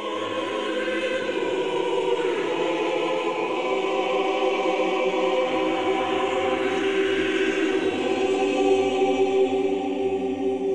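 A choir singing long, held chords that come in quickly at the start. A deep bass note joins underneath about five and a half seconds in.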